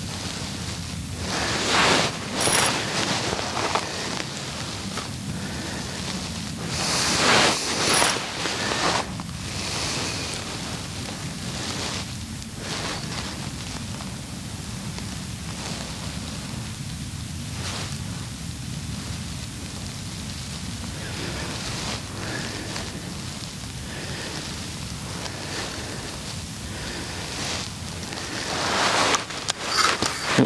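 Outdoor wind noise on the microphone: a steady low rumble, with louder hissy rustling bursts about two seconds in, around seven to nine seconds in, and again near the end.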